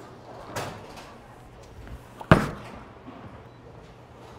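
A bowling ball lands on the wooden lane at release with a single sharp, loud thud a little over two seconds in, followed by a faint rumble as it rolls away.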